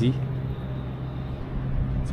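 Electric watermaker running: a 48V motor belt-driving a Cat 277 high-pressure pump, giving a steady low hum over a rougher low rumble. It is running at about 850 psi and making water.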